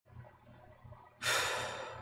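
A man exhales sharply, a sigh that starts suddenly a little past a second in and fades out over under a second.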